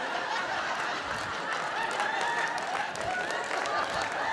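Live audience laughing, with scattered applause.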